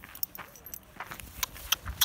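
A run of light, irregular clicks and metallic jingling, like small metal pieces knocking together. Near the end comes a soft low knock as a hand holding something brushes the phone.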